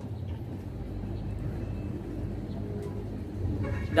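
Steady low background rumble with no clear events in it.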